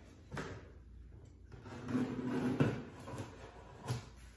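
A knife cutting through the packing tape on a cardboard box, with scraping and rubbing of blade and cardboard and a few sharp knocks as the box is handled.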